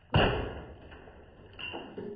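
A sudden heavy thud that fades out over about a second and a half, followed by a shorter swell near the end.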